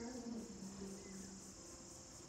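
Steady high-pitched insect chirring in the background, with faint held low tones beneath it.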